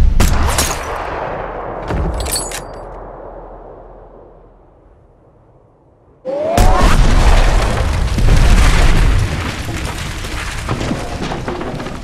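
Film sound effects: a heavy boom at the start that dies away slowly, a few sharp metallic clicks about two seconds in, then, after a quiet stretch, a sudden loud explosion about six seconds in that rumbles on for several seconds as it fades.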